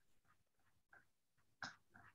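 Near silence in a pause between spoken sentences, with one faint, short sound about one and a half seconds in.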